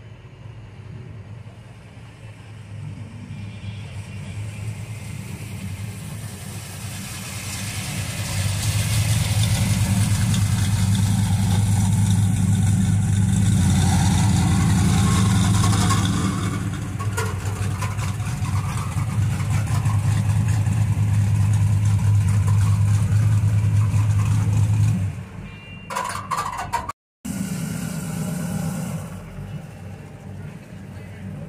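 A classic Chevrolet Chevelle's engine running at low speed as the car rolls up. It grows louder over the first several seconds, then holds a loud, deep, steady note before dropping off about 25 seconds in. Near the end, after a brief break, another car's engine is heard running at low speed.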